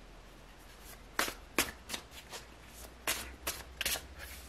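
A deck of tarot cards being shuffled by hand. It comes as a string of sharp, papery card snaps at uneven intervals, beginning about a second in.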